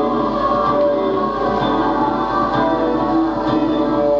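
Live experimental electronic music: many layered, held tones that drift slowly in pitch, with a choir-like sound.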